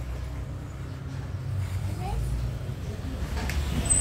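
Plastic toy building blocks being handled, with one sharp click about three and a half seconds in, over a steady low rumble.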